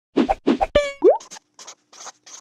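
Logo-intro sound effects: two quick pairs of popping knocks, a short ringing tone, and a fast rising boing-like glide just after a second in. Then come fainter, scratchy pen-scribble sounds as the handwritten logo word is drawn.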